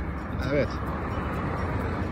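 Steady low outdoor rumble with a faint hiss behind a single short spoken word.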